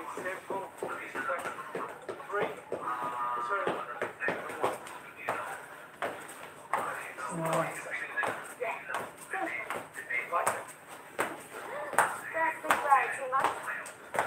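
Indistinct talking mixed with scattered light thumps and taps: footfalls and body movement of people exercising on a room floor.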